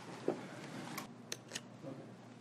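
Quiet room tone with a few faint, sharp clicks, three close together from about a second in.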